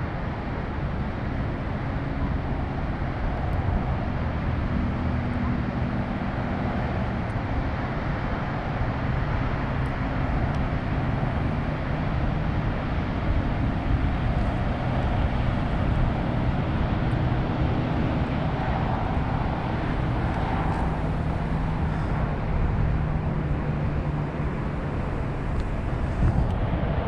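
Steady rushing outdoor noise of wind on the microphone, with a faint low hum of road traffic under it.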